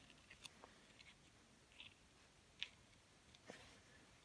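Near silence, with four or five faint, short clicks from the carburetor's diaphragm, gasket and plates being handled and set in place; the clearest comes about two and a half seconds in.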